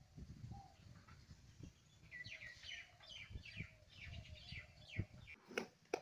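A bird chirping: a quick run of short, high falling chirps from about two to five seconds in, over a faint low rumble, with a couple of sharp knocks near the end.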